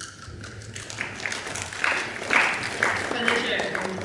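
Audience clapping in a hall, scattered claps building after the start, with voices mixed in partway through.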